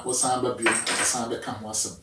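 A man talking, with several sharp hissing sounds among the words.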